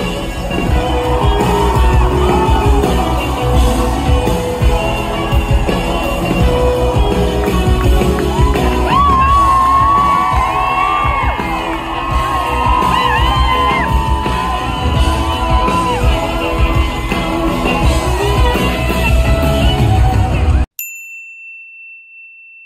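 Live pop-rock band with a female lead singer, heard through the festival PA from the crowd: bass-heavy and loud, with yells and whoops from the audience. The music cuts off suddenly near the end and a steady high beep follows for about two seconds.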